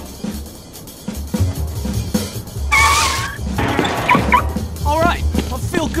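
Music with a low pulsing bass beat. From about halfway there is a run of short, high-pitched squeaks and yelps that glide upward.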